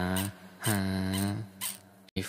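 A low voice drawing out long, held vocal sounds: one at the start, then a longer one lasting most of a second.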